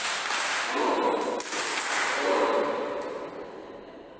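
A group of people clapping together in a burst of applause, with voices cheering in it. It starts suddenly and dies away over about three seconds.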